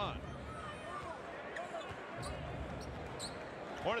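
A basketball being dribbled on a hardwood arena court, with voices in the background.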